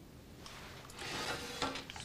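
Faint scraping and rubbing of a wire being twisted onto the copper end cap of a glass tube, with a few small ticks, growing louder about a second in.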